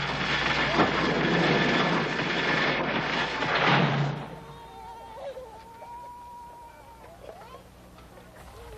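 A loud, even, noisy din for about four seconds that cuts off abruptly, followed by faint voices in the background.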